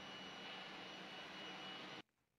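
Faint steady room tone: an even background hiss with a thin high whine, no distinct events.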